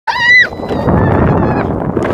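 A child's short high-pitched squeal, then a steady rushing, scraping noise of a sled sliding down a snowy slope, with faint squeals over it.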